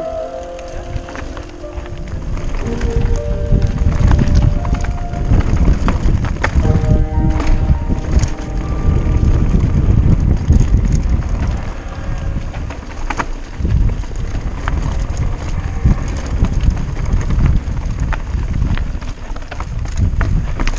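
Wind rumbling on a helmet-mounted camera's microphone as a mountain bike runs fast down a rough, rocky dirt trail, with sharp knocks and rattles from the bike over stones.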